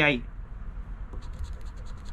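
A metal coin scraping the coating off a scratch-off lottery ticket, in a run of quick, rapid strokes starting about halfway through.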